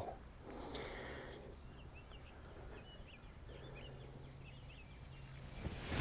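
Faint outdoor quiet with a few small bird chirps and a faint low hum. Near the end comes a rising swish as the fairway wood comes down toward the ball.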